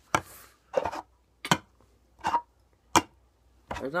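A run of about five sharp taps or knocks, evenly spaced about three-quarters of a second apart, with a brief hiss at the start.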